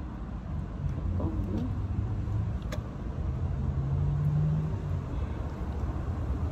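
Low steady rumble of a passing motor vehicle, with a low hum that swells past the middle and fades again, and one light click about halfway through.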